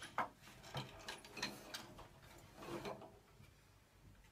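Wooden rungs of a rope ladder knocking and rattling as a cat climbs it: a string of faint, irregular knocks that dies away in the last second.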